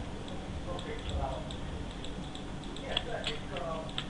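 A few sharp clicks of a computer mouse, clustered about three seconds in, over a steady low hum and faint voices.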